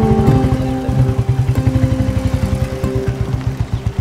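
Royal Enfield single-cylinder motorcycle engine idling with an even, rapid thumping beat, under background music with long held notes.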